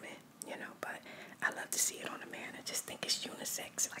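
A woman whispering close to the microphone, with hissy sibilants, in soft ASMR-style speech.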